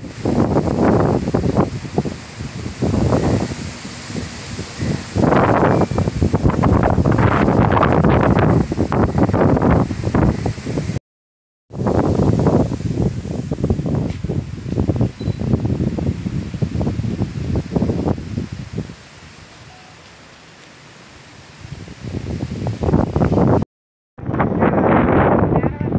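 Wind buffeting an outdoor phone microphone in loud, irregular gusts, easing off for a few seconds near the end. The sound cuts out completely for about half a second partway through.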